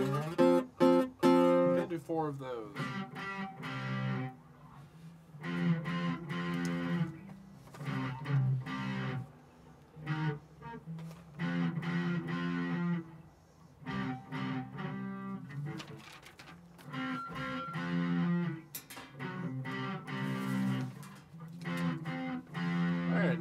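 Electric guitar and acoustic guitar strumming chords together through a song's chorus: quick, sharp chord strokes at first, then longer ringing chords with short breaks between them.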